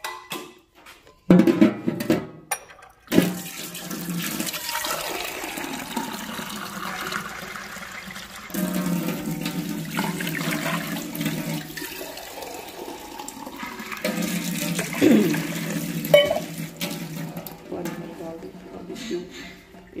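Water poured from a steel cup into an aluminium kadhai: after a couple of knocks near the start, a long, continuous splashing pour into the pan.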